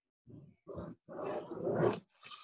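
A dog's rough vocal sounds: two short ones, then a longer one that grows louder toward the end.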